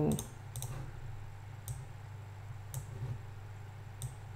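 A few sharp computer mouse and keyboard clicks, spaced about a second apart, while windows are switched and text is copied. Under them runs the steady low hum of a fan, with the microphone sitting on the desk.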